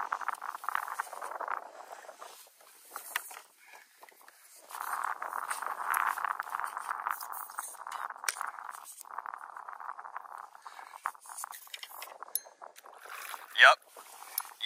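Spinning reel being cranked in spells during the fight with a hooked redfish, its gears whirring for a few seconds at a time with short pauses between, and scattered clicks.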